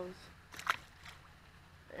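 A bass released back into the water, with a brief splash a little over half a second in.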